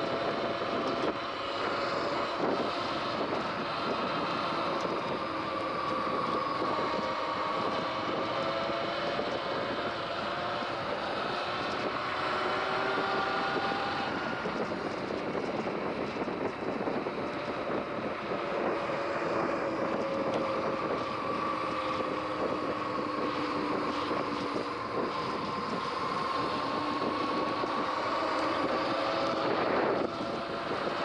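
Electric bike motor whining at speed, its pitch drifting slowly up and down as the speed changes. Steady rushing wind and tyre noise run under it.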